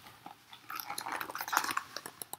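Paper pages of a picture book rustling and crackling as the open book is handled and lifted. The run of small crackling clicks starts about a third of the way in.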